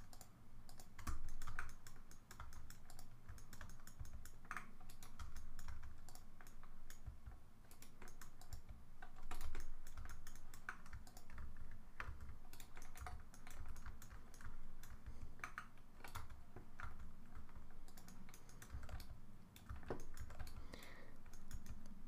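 Computer keyboard keys and mouse buttons clicking in an irregular, fairly quiet run of light taps, as shortcuts and edits are made in 3D modelling software.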